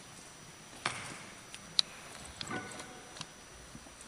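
Quiet room tone of a hall with scattered small clicks and knocks. The sharpest is a single click about two seconds in.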